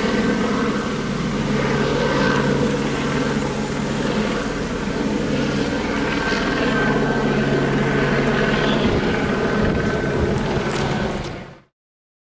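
A steady engine drone with a constant low pitch, fading in at the start and fading out near the end.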